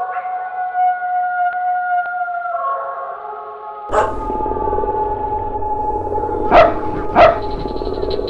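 A dog howling: one long drawn-out howl that drops in pitch partway through and breaks off with a thud about four seconds in. Music follows, with two short, loud barks about half a second apart near the end.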